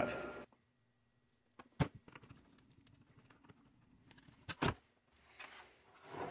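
Faint handling of a metal-cased power supply and its cord wires. There is one sharp click about two seconds in and a quick pair of clicks a little past the middle.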